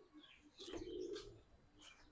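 A bird cooing once, a low, brief call a little under a second in.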